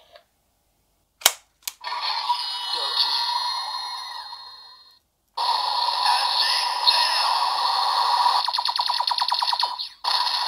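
DX Venomix Shooter toy gun: two sharp clicks, then its speaker plays the finisher's electronic voice calls and music, with a voice calling "Acid-dan!" (acid bullet). Near the end comes a rapid run of pulses for about a second and a half, then it cuts off.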